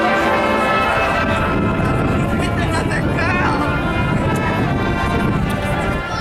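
High school marching band playing its halftime show, sustained brass chords most prominent at the start, with spectators' voices close by.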